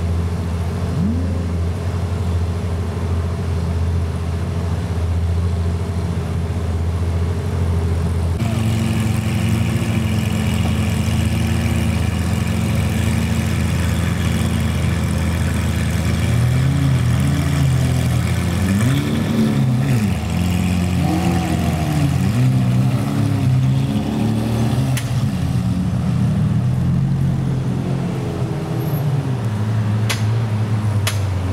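Car engine running at steady low revs, then from about halfway its revs rise and fall repeatedly as it accelerates and eases off.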